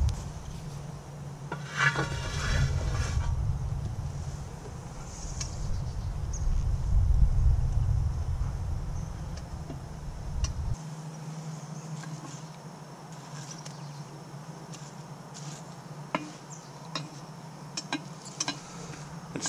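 Cast iron Dutch oven being lifted off its bottom coals and set down, its wire bail handle and a metal lid lifter clinking and scraping. A few sharp metal clicks come near the end.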